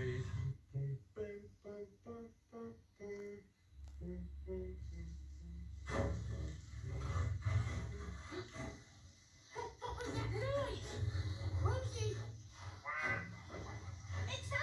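A short tune of separate notes, about three a second, then high, childlike puppet voices chattering in gibberish from about halfway through. All of it is heard through a television speaker.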